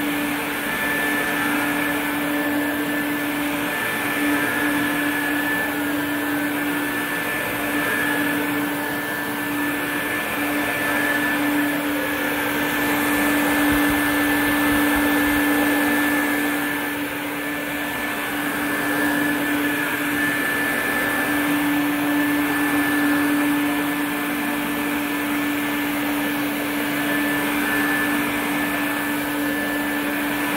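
Quantum X upright water-filtration vacuum cleaner running on carpet with its floor nozzle engaged. It gives a steady motor whine, a little louder and softer in turn as it is pushed over the carpet.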